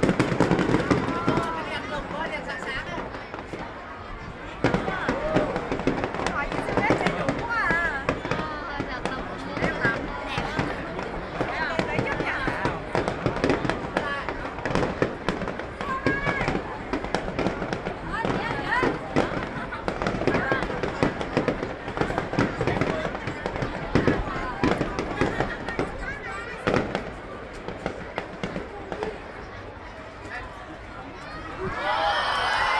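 Aerial fireworks display: shells bursting overhead in a rapid, continuous run of bangs and crackles, thinning out near the end.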